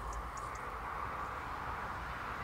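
Faint steady outdoor background hum with some low rumble, and a few faint, brief high chirps early on.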